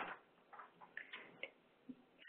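Near silence, with a few faint, scattered ticks.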